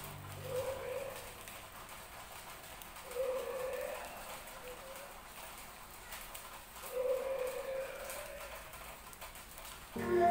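A bird giving three low calls, each about a second long and a few seconds apart, over a faint outdoor hiss.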